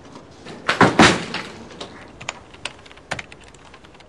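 A few sharp knocks close together about a second in, followed by lighter clicks spaced well apart and faint ticks that come closer together near the end.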